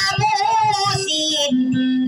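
A woman sings with a wavering pitch into a microphone, accompanying herself on a strummed acoustic guitar. Near the end a lower note is held steady.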